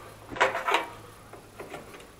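A few light knocks and clatters from climbing into the cab of an Ursus C330 tractor, two sharper ones in the first second and smaller clicks after.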